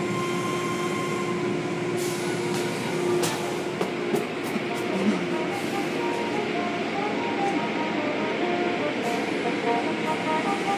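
Automatic tunnel car wash machinery running: a steady rush of water spray and cloth brushes and curtain strips working over a vehicle, with a few sharp knocks or slaps about two to five seconds in.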